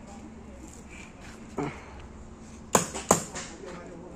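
Two sharp pops about a third of a second apart near the end: paintball markers firing. A faint short voice is heard a little earlier.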